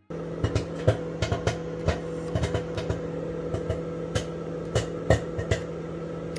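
Microwave oven running with a steady hum while popcorn kernels pop irregularly inside a covered silicone popcorn bowl, a few sharp pops a second.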